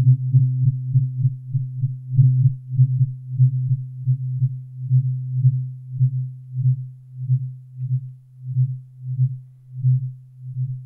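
A low-pitched tuning fork rings one steady note close to the microphone. The note swells and dips about two or three times a second as the fork is waved past the mic. The pulses slow and weaken toward the end.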